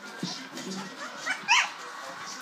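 Bulldog puppy at weaning age giving two quick high-pitched yelps close together, about one and a half seconds in.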